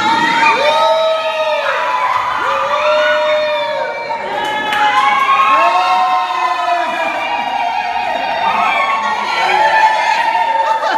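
A group of people singing and shouting together in many overlapping voices, loud, with notes held about a second each.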